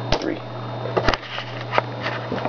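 A few sharp clicks of laptop keys or trackpad buttons being pressed to shut down both computers, over a steady low hum.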